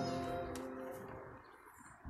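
The last held chord of a hymn, a sung note over steady sustained accompaniment, fading away within about a second and a half.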